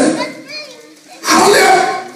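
A man's voice amplified through a handheld microphone, falling quiet for under a second near the start and then coming back loud.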